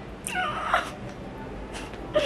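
A woman's short, high-pitched whimper, rising then falling in pitch, about half a second long near the start, as she is close to tears.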